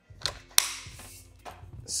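A few plastic clicks and knocks from a cordless stick vacuum cleaner being handled, the sharpest about half a second in.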